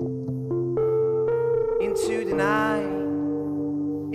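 A band's instrumental passage between sung lines: sustained keyboard chords with guitar, the chord changing every second or so.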